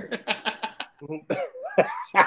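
A man laughing hard in a quick run of short, breathy bursts, then laughing again near the end.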